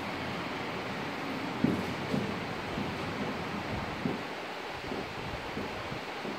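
Marker pen writing on a whiteboard: a few faint, brief taps and strokes over a steady background hiss, the clearest about a second and a half in.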